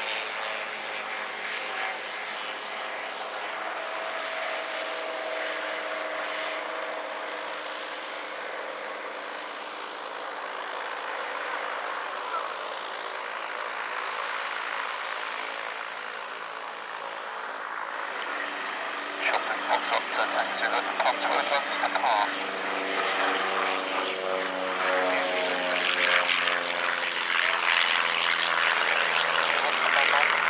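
Light propeller aircraft engines running: a steady, distant drone for the first half, then a nearer, louder engine with a pulsing beat from about two-thirds of the way in.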